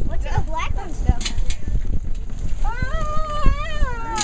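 People's voices: a short exclamation in the first second, then one long, high-pitched, drawn-out vocal cry from about two and a half seconds in to the end, over a low rumble.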